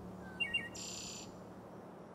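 A bird chirping: two quick short chirps, then a brief buzzy higher call about a second in.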